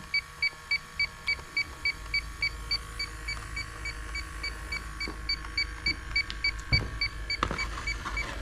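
Inficon D-TEK Stratus refrigerant leak detector alarming with a steady run of short high beeps, about four a second, as it reads about 21 ppm. The owner suspects that it is sensing something that isn't there, a false reading.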